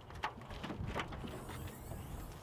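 A Toyota minivan's rear hatch being unlatched and swinging open: a few short clicks and knocks from the latch and hinge mechanism in the first second, then a faint low rumble.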